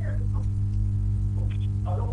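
Steady electrical mains hum, a low buzz with evenly spaced overtones, with a few faint fragments of speech.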